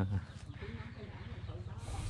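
A man's voice trails off on a drawn-out syllable, then a pause with faint low background noise and a short hiss near the end.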